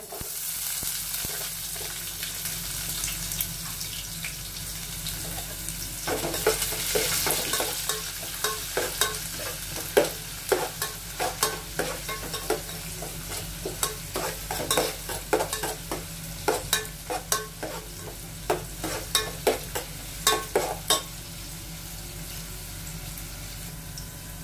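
Chopped onions sizzling in hot oil in an aluminium pot, with a steel spoon scraping and clinking against the pot as they are stirred. The stirring strokes start about six seconds in and come quickly and unevenly over the steady sizzle.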